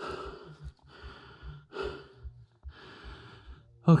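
A person breathing hard, a string of short, hissing breaths about a second apart.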